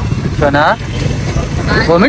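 Street traffic and car engine rumble through an open car window, a steady low hum. A short high-pitched voice cuts in about half a second in and again near the end.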